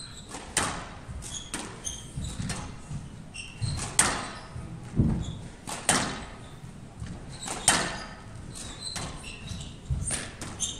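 Squash rally: the ball cracks off the rackets and the court walls, a sharp echoing hit about once a second, with short high squeaks of players' shoes on the court floor in between.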